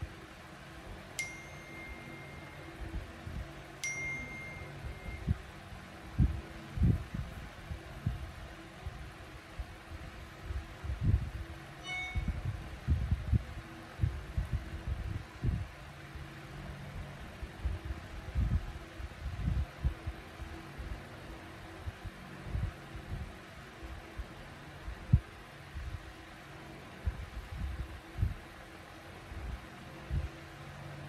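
Two electronic beeps about three seconds apart, each a steady high tone held for about a second and a half, and a shorter beep about twelve seconds in. Under them are a steady low hum and repeated low thumps and knocks.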